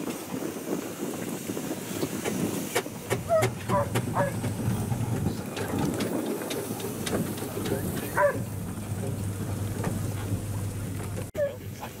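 Steam traction engines running as they move slowly past, a steady low rumble and hum with scattered clicks, and voices in the background.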